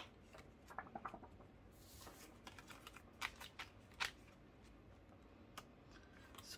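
Faint handling of paper, plastic sleeves and banknotes in a ring-binder cash wallet: a sharp click at the start, then scattered soft ticks and rustles, with a few crisper ticks a little past the middle.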